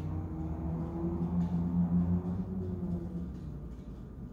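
A low hum that wavers slightly in pitch and fades out about three seconds in, with faint rustles of a pipe cleaner being wrapped by hand.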